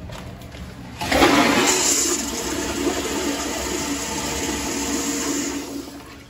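An Acorn stainless steel toilet flushing through its chrome flushometer valve: a sudden loud rush of water about a second in that holds steady for some four seconds, then dies away near the end.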